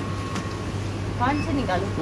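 Steady low machine hum with a faint thin tone above it. A quiet voice speaks briefly a little past halfway.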